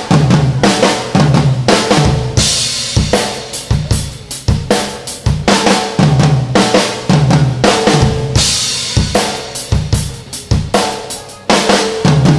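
Acoustic drum kit played with sticks in a repeating flam figure: each accented stroke doubled by a soft grace note, two snare flams and then flams split between floor tom and rack tom, over bass drum. Cymbal crashes come in twice, about two and a half and eight and a half seconds in.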